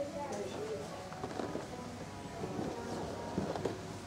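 Indistinct voices talking in the background, with faint music and a few light knocks.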